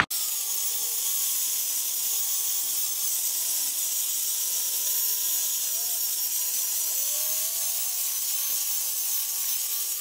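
Electric rotary buffer with a wool pad running over boat gel coat with cutting compound: a steady whirring hiss. A faint tone rises in pitch about seven seconds in.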